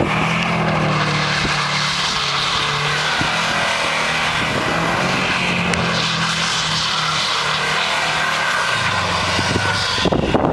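2004 Subaru WRX STI's turbocharged flat-four engine held at high revs while the car spins donuts in snow, over a steady hiss of tires churning through snow. The revs drop lower near the end.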